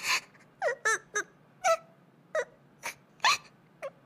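A girl sobbing: about nine short, broken whimpers and catching breaths, each voiced sob sliding up or down in pitch.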